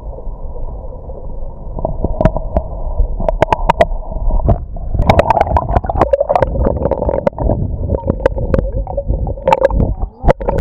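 Water heard underwater beside a canoe: a muffled low rumble and gurgle, with many sharp pops and clicks of bubbles and splashing from about two seconds in as a paddle strokes through the water.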